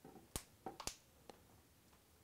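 Clips of a Samsung Galaxy Mega's thin, flexible plastic back cover snapping into place as it is pressed onto the phone: four sharp clicks, the loudest about a third of a second in and just under a second in.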